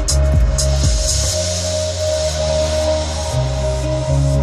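Electronic dance music with a deep, heavy bass line, played loud through an Audi A5's Bang & Olufsen car audio system in the cabin.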